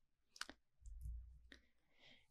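Near silence between spoken sentences, with one faint click about half a second in and a faint low rumble around the middle.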